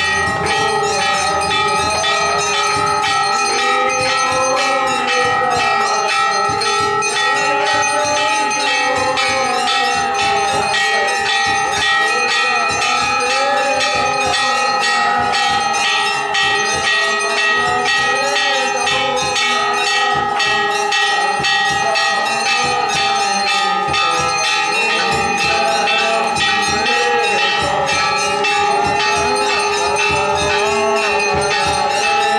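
Temple bells rung continuously through the aarti: a dense, unbroken clanging with the bells' ringing tones held steady throughout.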